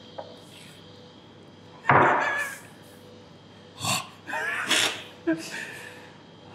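A man's sudden loud vocal outburst about two seconds in, a reaction to the chilli heat of a level-three hot nut, followed by a few short bursts of voice and laughter.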